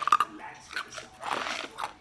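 Small, crunchy ice pellets being chewed and crunched in the mouth: a quick cluster of sharp crunches at the start, then more crunching through the middle and near the end.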